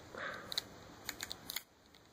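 A few faint, sharp plastic clicks as fingers force the stiff double-hinged toe joints of an S.H. MonsterArts King Kong action figure to bend.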